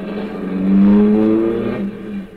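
A radio-drama sound-effect car engine accelerating, its pitch rising steadily and loudest about a second in, over a steady low hum.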